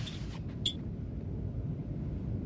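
The hiss of a sliding starship door dying away in the first moment, then a single sharp clink about two-thirds of a second in, over a steady low starship hum.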